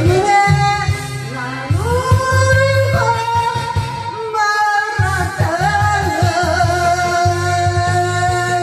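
A woman singing a Korean pop song into a karaoke microphone over a backing track with a steady bass beat, holding long notes with a wavering pitch. The bass drops out briefly a little past the middle.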